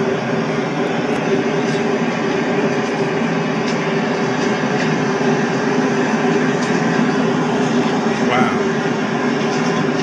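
The sound of a large poultry-house fire as fire crews work it: a loud, steady drone with a constant low hum running through it. A brief faint rising call is heard about eight seconds in.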